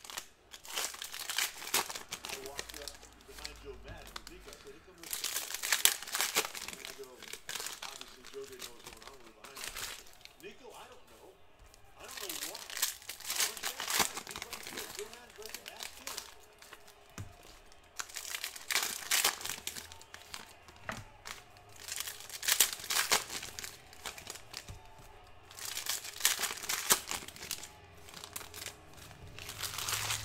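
Foil trading-card pack wrappers crinkling and tearing as packs are ripped open and handled by hand, in repeated bursts every few seconds.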